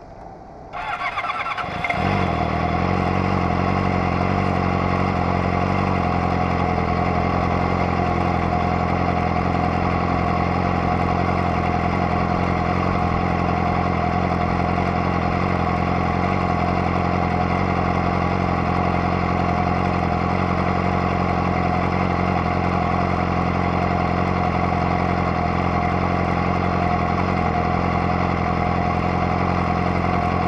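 Sport motorcycle engine being started: a second of starter cranking, then it fires about two seconds in and settles into a steady idle.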